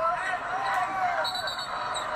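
College basketball TV broadcast audio: a commentator's voice talking over a steady hum of arena crowd noise.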